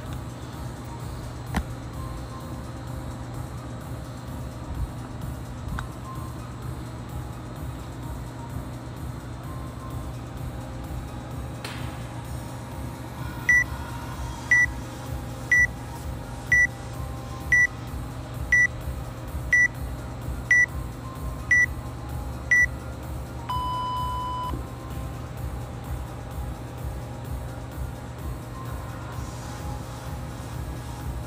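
Workout timer counting down to the start: ten short high beeps about a second apart, then one longer, lower beep that marks the start.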